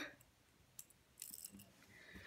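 Faint clicks of a plastic ballpoint pen's parts being handled and twisted apart: one tick just under a second in, then a short run of small clicks.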